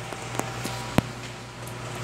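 Schindler elevator car humming steadily, with a few sharp clicks, the loudest about a second in.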